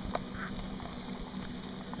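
Faint bubbling hiss of a Mamod SP4 model steam engine's boiler heating over a solid-fuel tablet, with a couple of light clicks right at the start.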